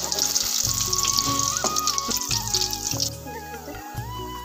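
Battered chillies deep-frying in hot oil in a steel kadai: a steady crackling sizzle, under background music. The sizzle stops about three seconds in, leaving the music.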